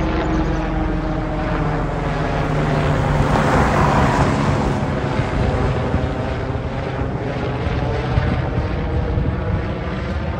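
Light single-rotor helicopter flying low overhead, its rotor chopping steadily. It grows louder to a peak about four seconds in, then eases a little.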